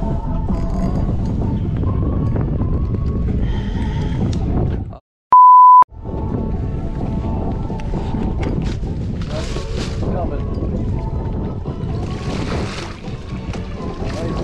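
Background music over wind and water noise on the boat, broken about five seconds in by a sudden dropout to silence and a short, loud single-tone censor bleep lasting about half a second.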